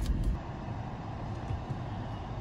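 Steady low rumble of road and engine noise inside a moving car's cabin, dropping a little in level about half a second in.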